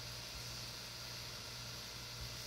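Steady low hum with an even hiss from a DIY microwave-oven plasma treater running at reduced power, with its vacuum pump going.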